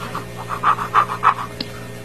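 Ballpoint pen scratching on notebook paper, a quick run of short strokes as an X is drawn.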